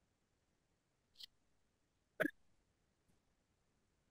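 Near silence, broken by a faint breath about a second in and one short throat sound from a man, like a hiccup or gulp, a little after two seconds.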